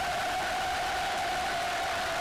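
A censor bleep masking a swear word: one steady, unbroken tone over a hiss.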